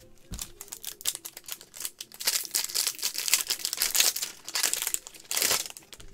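Foil wrapper of a trading-card pack crinkling and tearing as it is opened. It is a dense run of crackles that builds about two seconds in and stops just before the end.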